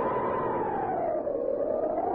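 Howling wind sound effect for a sleet storm in the mountains: a steady rush with a whistling tone that rises slightly, then sinks in pitch and starts to climb again near the end.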